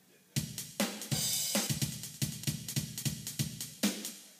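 A drum machine starts a programmed rock beat about a third of a second in: kick, snare and hi-hat in a quick steady pattern with a cymbal crash, cutting off just before the end.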